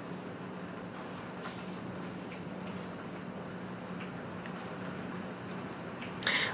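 Steady low background noise with a faint steady hum underneath: room tone, with no distinct event.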